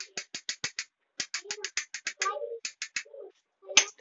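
Light, rapid clicking and tapping of a spoon against tiny metal bowls as batter is scraped from one bowl into another: two quick runs of clicks, then one sharper knock near the end.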